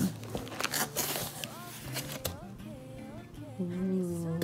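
Cardboard box flaps being pulled open and handled, with scraping and rustling in the first second or so. Quiet background pop music with a singing voice plays throughout.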